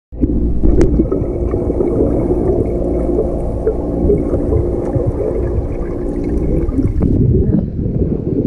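Muffled underwater sound of a swimming pool, heard through an action camera's waterproof housing: a steady low rumble with a faint hum and scattered clicks. About seven seconds in it changes abruptly to choppier sound of splashing water.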